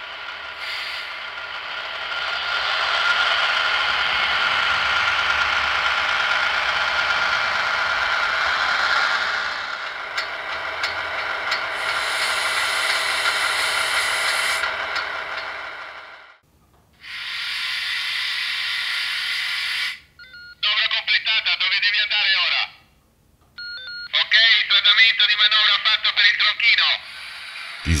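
Recorded sound played from the sound decoder of a PIKO H0 model of the FS D.145 diesel shunting locomotive. First the diesel engine runs steadily in shunting mode, then a handbrake sound plays. Near the end come two short stretches of recorded voice.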